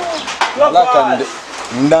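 A man's voice in short phrases that rise and fall in pitch, the words not made out, with a brief click about half a second in.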